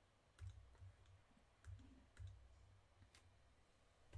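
Near silence broken by a few faint clicks and soft low bumps, the taps of a stylus writing on a pen tablet.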